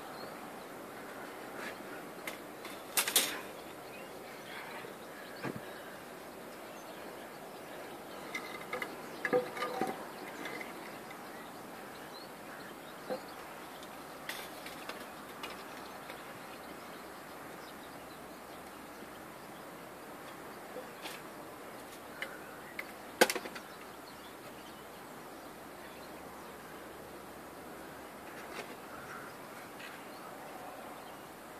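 Faint steady outdoor background, broken by a few sharp knocks and clatters as objects are handled and set down. The loudest come about three seconds in, around nine to ten seconds in, and once more sharply about twenty-three seconds in.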